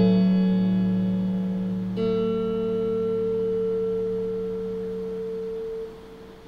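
Electric guitar in drop D with a capo on the second fret, letting the song's closing notes ring. One chord fades from the start, and a second is struck about two seconds in and left to ring, fading slowly until it cuts off near the end.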